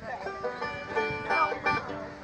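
Bluegrass string band with banjo picking a quick run of plucked notes as the song gets under way.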